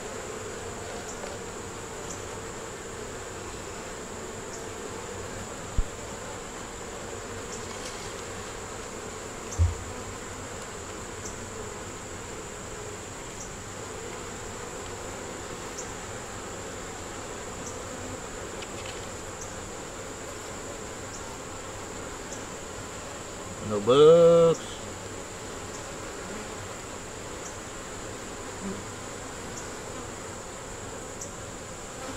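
Honey bees buzzing steadily around open hive boxes, with a couple of short dull knocks near 6 and 10 seconds. About 24 seconds in there is a brief rising vocal sound from a person, the loudest thing here.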